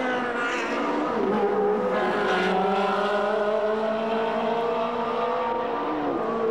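Ferrari 360 Challenge race cars' 3.6-litre V8 engines at high revs on track. The engine note changes about two seconds in, then climbs slowly through one long pull.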